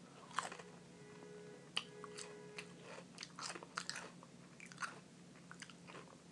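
Faint, irregular small clicks and crunching sounds close to the microphone, over a steady low hum.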